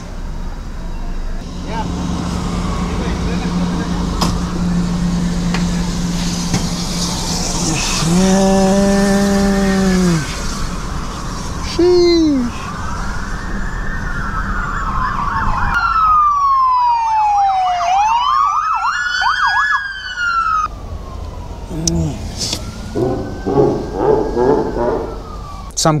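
Emergency vehicle sirens wailing, their pitch sweeping up and down, thickest in the middle of the stretch where several sweeps cross, with a deep horn blast about eight seconds in and a shorter one about four seconds later, over a steady low traffic drone.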